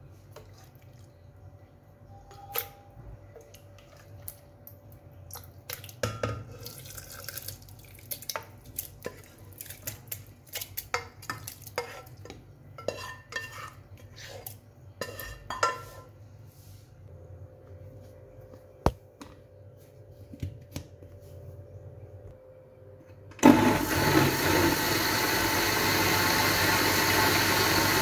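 Scattered light clinks and knocks as cooked tomatoes are spooned into a glass blender jar. Near the end an electric countertop blender starts abruptly and runs loudly and steadily, puréeing the pressure-cooked tomatoes.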